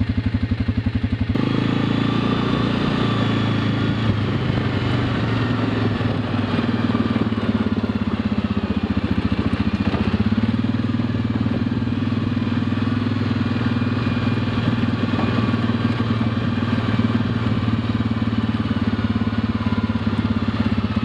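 ATV engine idling with an even pulse, then changing abruptly about a second in to a steady running note as the machine rides on, rising and falling slightly with the throttle.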